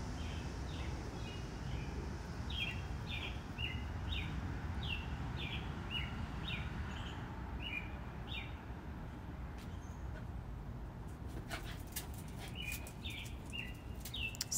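A small bird chirping over and over in short falling notes, about two a second, pausing about two-thirds of the way through and starting again near the end, over a low steady background hum. A few light clicks are heard shortly before the chirping resumes.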